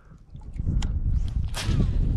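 Wind buffeting the microphone with a low rumble that starts about half a second in, and a short sharp swish about a second and a half in.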